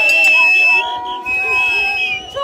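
A crowd of celebrating voices, with a shrill, high-pitched held note sounding twice over them: once for most of the first second, and again briefly later on.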